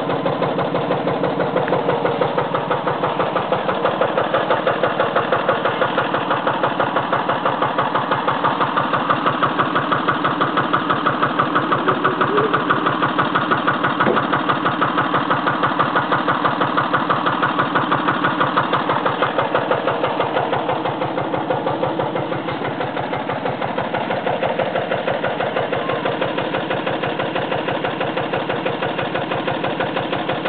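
Tractor engine running steadily with an even, rapid beat, dipping slightly in loudness about two-thirds of the way through.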